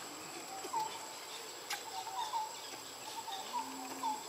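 Short chirping animal calls, repeated every half second or so, over a steady high-pitched tone, with one sharp click a little before halfway.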